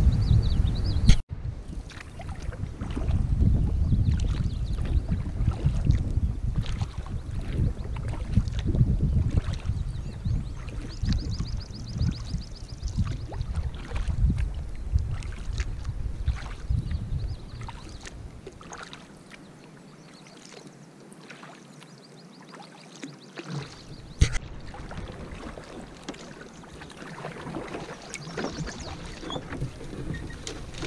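Canoe being paddled with a double-bladed paddle: repeated paddle strokes and water against the hull, under a low wind rumble on the microphone. The sound changes abruptly about a second in and again about 24 seconds in, and is quieter for a few seconds before the second change.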